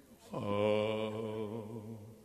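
A man's voice holding one long, low sung note, starting about half a second in and fading near the end.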